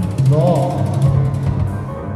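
Free-improvised jazz trio of piano and synthesizer, a wind instrument and drums. A sustained low drone runs under a short rising-and-falling wind-instrument phrase about half a second in, with rapid clattering percussion strikes throughout.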